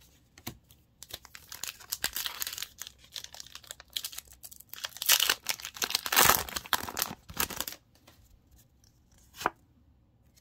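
Pokémon Temporal Forces booster pack's foil wrapper being torn open and crinkled by hand: several seconds of irregular tearing and rustling, loudest in the middle. A single short click comes near the end.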